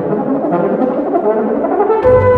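Solo euphonium playing a fast run of short notes in its middle register, with little bass accompaniment beneath it.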